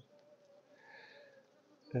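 Honey bees humming from an opened top-bar hive: a faint, steady buzz from the colony on the exposed combs.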